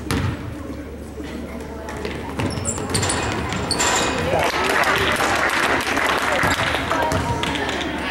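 A basketball bounces on a hardwood gym floor at the free-throw line. From about two and a half seconds in, spectators' voices rise in shouts and cheers in the echoing gym as the shot goes up and players fight for the rebound.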